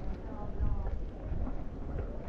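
Indistinct talk of people nearby, fading out after the first half-second or so, over an uneven low rumble of wind buffeting the microphone.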